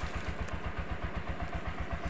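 An engine idling steadily, with a rapid, even low chugging beat.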